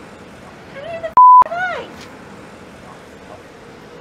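A censor bleep: one short, steady, high beep about a third of a second long, blanking out a spoken word about a second in, with a few words of speech on either side of it.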